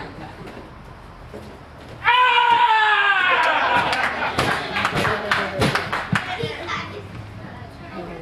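A loud, long, high-pitched vocal cry starts suddenly about two seconds in and slowly falls in pitch, as a person is thrown over in a karate throw, with sharp thuds or claps mixed in before it fades near the end.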